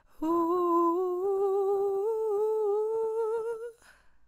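A young woman's unaccompanied voice holding one long wordless note that slowly rises in pitch, with a slight waver, for about three and a half seconds, then stops.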